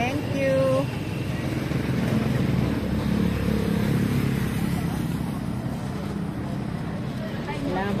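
A motorcycle engine running close by, a steady low hum that is strongest in the middle, with snatches of voices at the start and near the end.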